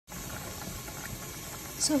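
Water at a rolling boil in a pot with smoked herring in it, bubbling steadily.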